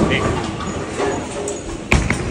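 A bowling ball released onto the lane, landing with a single loud thud near the end, over the voices and background noise of a bowling alley.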